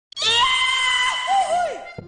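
A high-pitched, voice-like cry that starts suddenly and holds one pitch for about a second. It then swoops down and back up a couple of times and fades out.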